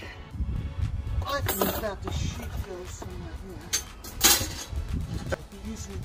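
A few sharp metal clanks and clinks as a steel charcoal grate and parts are set into a folding steel firepit, the loudest a little past halfway, over a low wind rumble on the microphone, with murmured voices.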